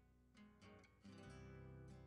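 Faint background music of plucked acoustic guitar: a few soft notes, the last ringing on from about a second in.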